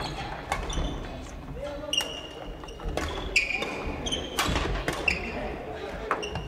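Badminton rally: several sharp racket strikes on the shuttlecock and short squeaks of court shoes on the wooden floor, echoing in a large sports hall, with players' voices in the background.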